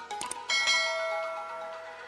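A few quick mouse-click sound effects, then about half a second in a bright bell chime rings out and slowly fades: the notification-bell sound effect of a subscribe-button animation, over background music.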